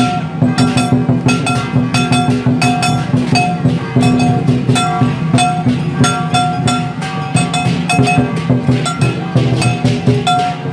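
Dragon dance percussion: a large drum and cymbals struck in a fast, steady beat, with held pitched notes ringing under the strikes.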